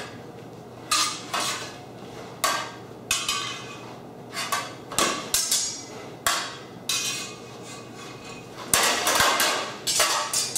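Swords and bucklers clashing in a sword-and-buckler bout: irregular sharp metallic clanks that ring briefly, a dozen or so, with a quick flurry of blows about nine seconds in.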